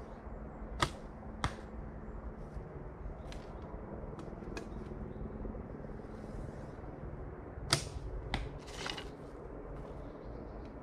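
A 30-pound Mongolian horse bow shot twice: each release is a sharp string slap, followed about half a second later by a second, fainter click. The first shot comes about a second in and the second near the end.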